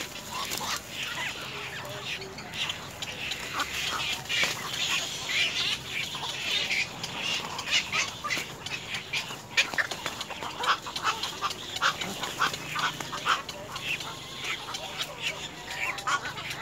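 Downy black-crowned night heron chick in its stick nest giving a busy run of short, quick calls and clicks, several a second, with no let-up.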